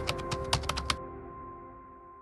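Keyboard-typing sound effect over a closing music sting: rapid key clicks over sustained tones, stopping about a second in, then a held tone fading out.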